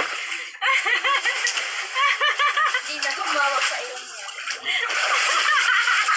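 Several people's voices calling out over water splashing and slapping in an inflatable kiddie pool.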